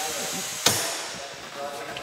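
A single sharp knock about two-thirds of a second in, over a fading hiss, with faint voices.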